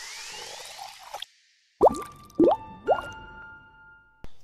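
Logo-intro sound effects: a hissing whoosh with a rising sweep that stops about a second in, then after a short gap three quick upward-gliding plops, each leaving a held ringing tone.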